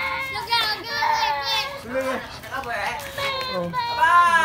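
A young child's high voice calling out in a string of short wordless sounds, with other voices mixed in.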